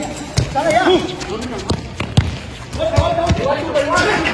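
A football being kicked and bouncing on a concrete court: several sharp thuds, the loudest about halfway through, over shouting voices.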